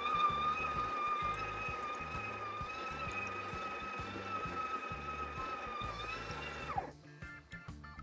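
Breville Barista Touch Impress's built-in conical burr grinder running steadily with a high whine as it grinds beans into the portafilter, then winding down and stopping about seven seconds in.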